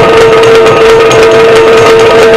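Yakshagana accompaniment: a steady high drone held throughout under repeated drum strokes and small cymbals keeping the dance rhythm.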